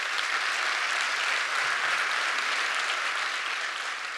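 Audience applauding after a talk: a dense, steady clatter of many hands clapping that eases slightly toward the end.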